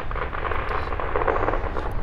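Distant firecrackers popping in long rapid strings, a dense continuous crackle with a steady low rumble underneath.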